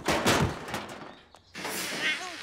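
Cartoon sound effect of a dented metal trash can being kicked: a rapid clattering crash of metal impacts in the first second, followed by a rushing swish near the end.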